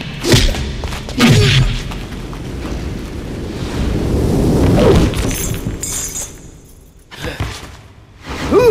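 Film fight-scene sound effects: sharp punch and body-impact hits in the first second and a half, then a swelling crash peaking about five seconds in that dies away, with one more hit near the end.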